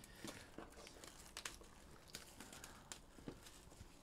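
Faint rustling and scattered light clicks of hands handling a cardboard trading-card box.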